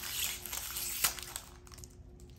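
Wrapper of an Optic football trading-card pack crinkling as it is torn open and the cards are slid out, with a sharp click about a second in, then growing quieter.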